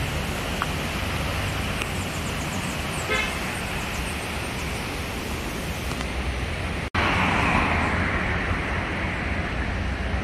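Steady street traffic noise, with a brief horn toot about three seconds in. The sound cuts out for an instant about seven seconds in, and the traffic is a little louder after.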